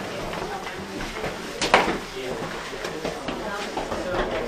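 Indistinct voices of several people talking, with one sharp knock a little under two seconds in.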